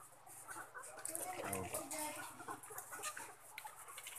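A flock of caged ready-to-lay hens clucking softly, with scattered light clicks.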